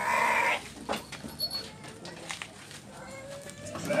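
A Garut sheep bleats once, briefly, right at the start, followed by a light knock about a second in.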